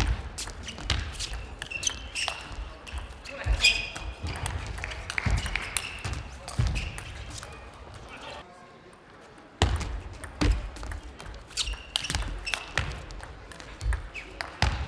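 Table tennis rallies: the ball clicking off the players' bats and the table in quick exchanges. About two-thirds of the way through, the sound cuts abruptly to a new rally.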